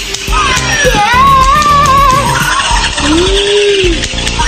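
Background music with a steady low beat and a wavering, gliding melody line.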